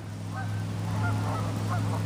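Waterfowl on the pond calling faintly over a steady low hum.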